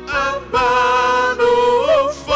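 Slow worship song: a voice sings long, drawn-out notes with vibrato, pausing briefly before half a second in and rising near the end, over a steady held accompaniment.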